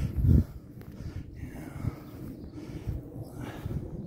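A short, loud breath or huff near the start, then soft footsteps in long dry grass under a quiet outdoor background.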